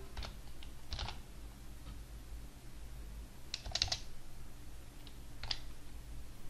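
A few faint computer keyboard keystrokes, irregularly spaced, with a short run of several taps past the middle, as a word is typed.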